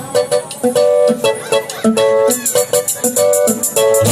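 Live band playing an instrumental passage: a choppy electric guitar riff of short repeated notes, with a steady cymbal beat coming in about halfway through.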